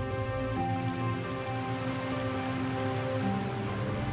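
Creek water rushing steadily over rocks, under soft background music of long held chords that change about half a second in and again near the end.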